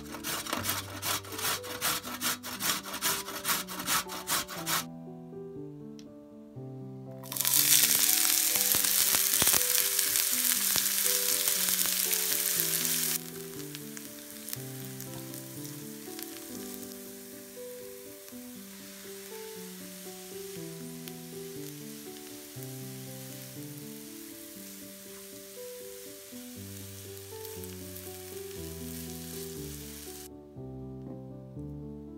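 Carrot scraped on a metal box grater, about two or three strokes a second, for the first few seconds. After a short pause, chopped onion hits a hot frying pan with a loud sizzle that drops after about six seconds to a quieter, steady frying sizzle, stirred with a silicone spatula. Background music plays throughout.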